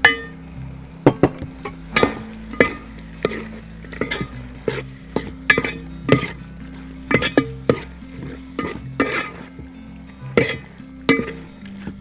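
Metal ladle stirring and scraping thick beef curry in a large aluminium pot, knocking against the pot's side every half second to a second.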